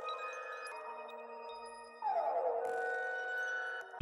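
A melodic phrase loop sample playing back: a pitched sound slides down and then holds, slowly dying away, with a few faint high pings. It starts again about two seconds in.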